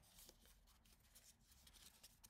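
Near silence: room tone, with faint rustling of thin card being handled and folded.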